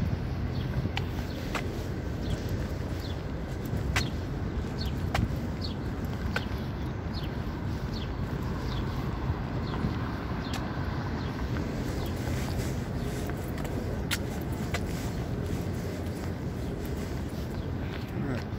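Outdoor city street ambience: a steady low rumble of road traffic, with scattered short clicks and brief high chirps over it.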